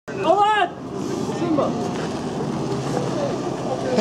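A loud whoop about half a second in, then a steady rumble of a Dodge Caravan minivan's engine idling under people's chatter, with a laugh near the end.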